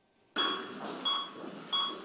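UTAS UM-300 bedside patient monitor in an intensive-care room beeping three times, a little under one and a half beeps a second, over a steady hiss. The beeps start about a third of a second in and keep time with the patient's heartbeat, which shows as a pulse of 85 on the monitor.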